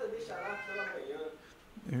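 A quiet, high-pitched, drawn-out vocal sound with a wavering pitch, higher than the preacher's voice, fading out a little past a second in. A man's spoken word follows at the very end.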